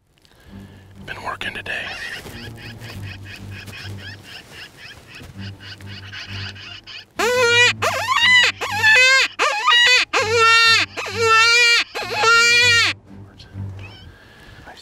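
Predator distress call blown by hand to call in coyotes: a series of about half a dozen loud, wavering, crying wails starting about seven seconds in.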